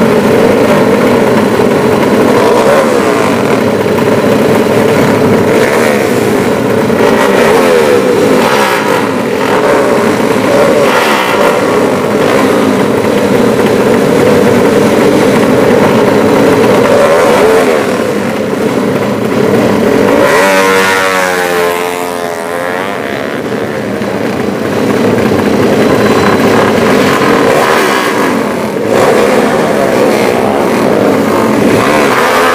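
Several modified drag-race motorcycle engines running loudly together, the riders revving them while held at the start line. A little past two-thirds of the way through, one engine is revved sharply up and back down.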